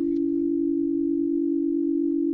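A steady low held tone, a musical drone like a singing bowl, with a deeper tone beneath it that fades out a little past halfway.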